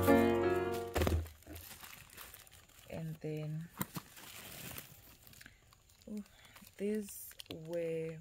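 Clear plastic grocery bags crinkling and rustling as items are handled and taken out. A piano music bed fades out in the first second, and a few short voiced sounds come in the second half.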